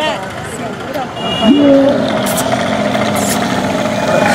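A dromedary camel bellowing, one long, low call that starts about a second and a half in and holds steady, as it is made to stand up with a rider on its back.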